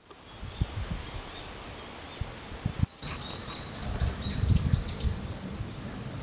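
Outdoor ambience with a steady hiss, in which a songbird gives a run of short, high chirps, most of them in the second half. Irregular low rumbles come and go underneath, strongest near the end.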